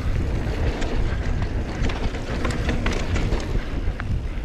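Wind buffeting an action camera's microphone during a fast mountain-bike descent, with the bike rattling and clicking repeatedly as it runs over the dirt trail.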